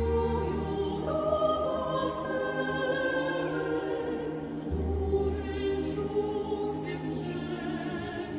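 Mixed choir singing a traditional Polish Christmas carol in harmony, accompanied by a chamber string orchestra that holds low bass notes underneath.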